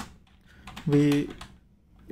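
Typing on a computer keyboard: a few separate keystrokes as a word of code is typed, with a spoken word about a second in.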